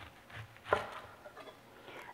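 Chef's knife cutting through a whole onion and striking a wooden cutting board: a single sharp knock about three-quarters of a second in, with a few faint soft knocks before it.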